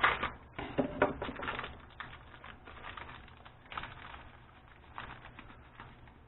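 Packet of fish breading being slit open with a knife and handled: a run of crinkles and clicks, loudest in the first two seconds, then fainter scattered rustling.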